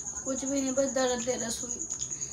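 A steady, high-pitched cricket trill runs throughout. A quiet voice is heard over it for about the first second and a half.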